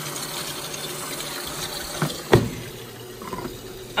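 Liquid laundry detergent poured from its cap into the dispenser drawer of a front-load HE washing machine, a steady pouring sound that eases off a little past halfway. Two quick knocks come about two seconds in, the second one loud.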